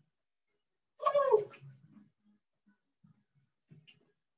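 A short, high-pitched "woo" whoop of exertion about a second in, falling in pitch. Faint soft taps of a soccer ball being worked back and forth by the feet run underneath.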